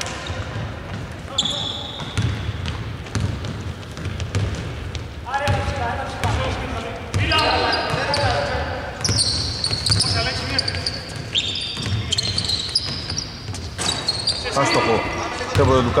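Live basketball game sounds on a hardwood court: the ball dribbling repeatedly, short high sneaker squeaks, and players calling out to each other.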